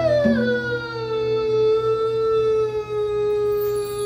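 A man's singing voice holding one long note that slides down a little at the start and is then sustained, with the guitar and congas stopped underneath.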